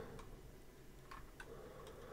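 A few faint clicks of a computer mouse as the page is scrolled and clicked, over quiet room noise.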